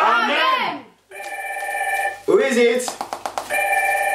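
Singing stops about a second in, and after a brief silence a telephone rings twice in a recorded song, with a voice and a rapid rattle between the two rings.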